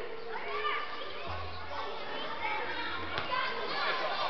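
Overlapping voices, many of them children's, chattering and calling out in a school gym.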